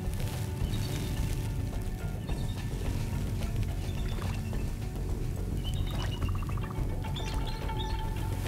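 Background music over the soft splashing of a white-tailed doe wading across a shallow creek.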